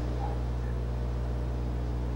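A steady low electrical hum with a faint hiss, unchanging throughout: mains hum carried through the room's sound system during a pause.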